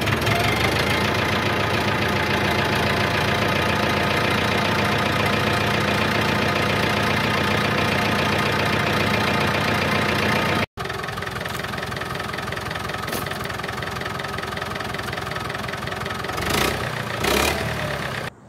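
David Brown 990 tractor's four-cylinder diesel engine running steadily just after starting, on its freshly rebuilt injector pump. About ten seconds in the sound drops abruptly to a quieter steady run, with two brief louder bursts near the end.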